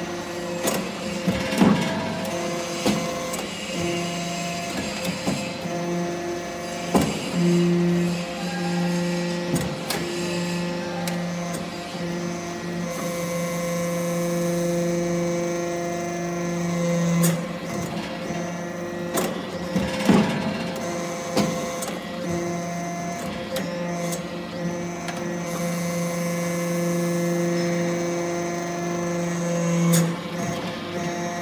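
Hydraulic scrap-metal chip briquetting press running: a steady hydraulic pump hum that grows stronger for stretches of several seconds as the press works under load. Sharp metallic knocks come every few seconds as briquettes are pushed out along the chute.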